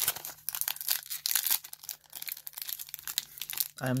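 Foil wrapper of a Pokémon card booster pack crinkling in the hands as it is gripped and torn open: a dense, irregular run of crackles. A voice starts right at the end.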